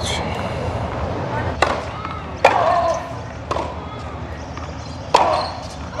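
Tennis ball struck with rackets during a rally: four sharp pops spaced about a second apart, the last near the end.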